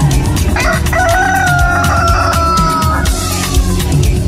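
Rooster crowing once, a long call of about two and a half seconds that slowly falls in pitch, over gospel reggae music with a steady beat.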